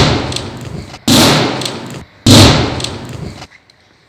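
Three very loud bangs about a second apart, each dying away over about a second with a deep, booming low end, as flames flare up at the entrance.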